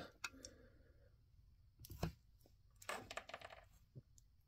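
Faint clicks and taps of plastic action figures being handled, a few scattered ones with a short cluster about three seconds in.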